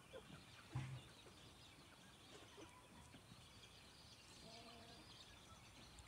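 Near silence with faint outdoor background. A faint chicken call is heard around four and a half seconds in, and there is a short low sound about a second in.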